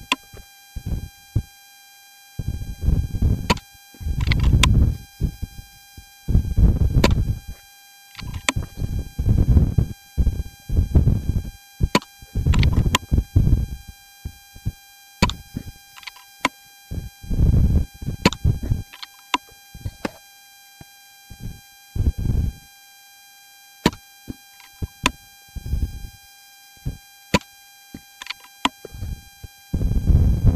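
Wind buffeting the microphone in irregular gusts, each a low rumble lasting around a second, with a few sharp clicks between them. Steady faint high tones run underneath, electronic noise from a faulty microphone.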